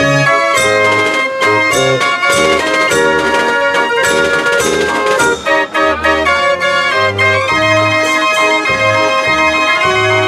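Dutch street organ (draaiorgel) playing a tune: pipe melody and chords over bass notes that sound again and again, with drum strikes.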